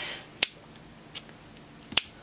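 SMA torque spanner's spring-loaded break-over head clicking as it is flexed by hand: two sharp clicks about a second and a half apart, with a fainter one between. Each click is the ball bearing popping out of its detent as the head toggles over, the sign that the set torque is reached.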